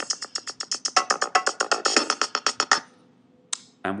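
Apple Logic's Ultrabeat drum machine, loaded with a drum and bass kit, playing one of its preset sequencer patterns: a rapid, even run of drum hits that stops just under three seconds in. A single short click follows about half a second later.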